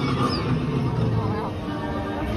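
Ride vehicle running along its track with a steady low rumble. Faint, muffled voices from the ride's soundtrack play over it.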